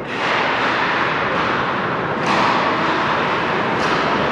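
Live ice hockey play: a steady wash of skates on the ice and rink noise, with two sharp knocks from sticks and puck, one about two seconds in and one near the end.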